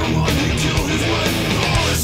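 1990s thrash metal recording: distorted electric guitar riffing over bass and drums, loud and continuous.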